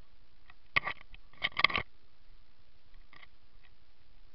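Sharp snapping cracks: one about three-quarters of a second in, then a quick cluster of three or four about a second later, over a faint steady hiss.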